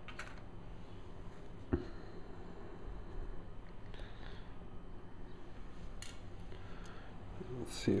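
Small metal tool clicking and scraping against the metal mount and contact plate of a camera lens during disassembly, with one sharp click about two seconds in and a few fainter ticks after it.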